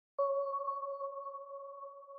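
A single sustained synthesizer note, the opening of a hip hop instrumental beat, starts just after the beginning and slowly fades.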